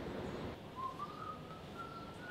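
A person whistling one slow, drawn-out tune that begins just under a second in and climbs gradually in pitch, over faint background hiss.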